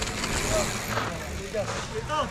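Mountain e-bike rolling in over dirt, its tyres scrubbing on the ground, loudest in the first second, with spectators' voices in the background.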